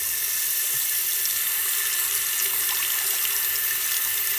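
Bathroom sink tap running steadily into the basin, with a safety razor held under the stream to rinse it.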